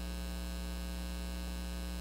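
Steady electrical mains hum, a low unchanging buzz with a ladder of higher overtones.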